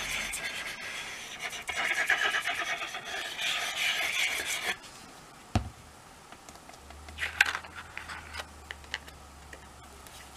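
Nozzle tip of a liquid glue bottle scratching across card as glue is squeezed on in squiggles, lasting nearly five seconds. Then a single sharp tap and a few light rustles of card being handled.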